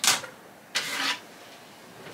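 A white plastic tabletop mirror being taken off a shelf and handled: a short knock at the start, then a brief scraping rustle just before the middle.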